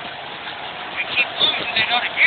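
Volvo 240 driving over a rough field track, heard from inside the cabin: steady engine and road noise, with several short wavering higher-pitched sounds in the second half.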